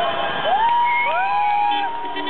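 Street crowd of celebrating football fans cheering, with several long overlapping whoops, each rising at the start, held about a second and falling away.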